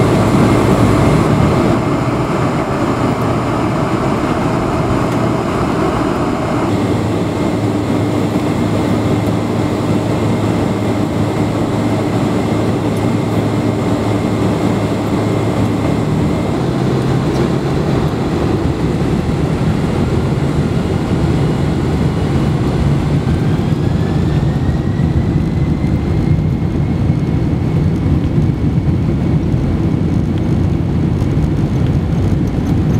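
Cabin noise inside a Boeing 747 rolling on the ground: a steady engine rumble with a faint high whine. Past the middle, another whine climbs in pitch over several seconds.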